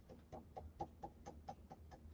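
Faint, quick taps and brushing of a round stencil brush worked over a stencil sheet onto a painted tabletop, about five strokes a second.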